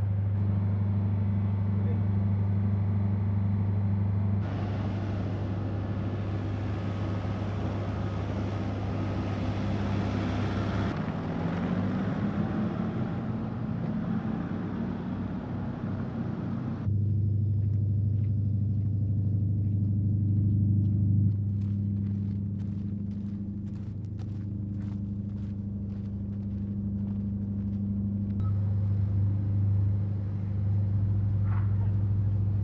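Outdoor ambience of a vehicle camp, made of several spliced pieces that change abruptly. A steady low engine hum runs throughout, with vehicles moving, and a run of light clicks in the latter part.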